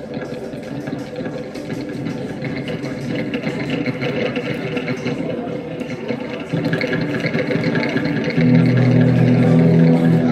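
A live rock band plays with electric guitar, building in loudness. It steps up about six and a half seconds in, and near the end loud, sustained low chords come in.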